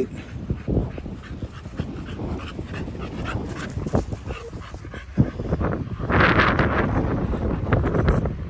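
A blue fawn pit bull-type dog whining and panting during play, among scattered knocks and rustle from the phone being handled, with a stretch of hissing noise about six seconds in.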